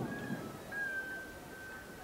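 Faint outdoor background with a thin, high whistled note that sounds briefly, breaks, then holds for about a second, dropping slightly in pitch.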